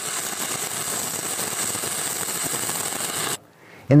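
Shielded metal arc welding with a 7018 rod in the flat position: the arc sizzling steadily, then cutting off abruptly near the end.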